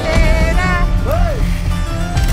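Music with a strong, pulsing bass, with a short rising-and-falling tone about a second in.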